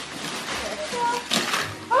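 Wrapping paper tearing and crinkling as it is ripped off a gift box, loudest about a second and a half in.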